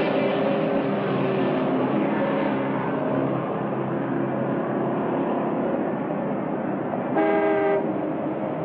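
Steady vehicle running noise, with one short, loud horn toot about seven seconds in.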